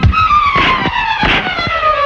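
Fight-scene soundtrack: a long falling tone glides steadily down over about two seconds, struck through by a few sharp punch sound effects.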